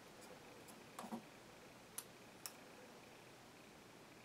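Near silence, with a few faint clicks about a second in, at two seconds and just after: small handling noises as a brush-cap applicator of liquid electrical tape is worked against its can and a small servo.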